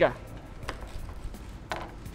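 Kitchen knife cutting semi-frozen fish bait on a plastic cutting board, heard as a few faint knocks and taps.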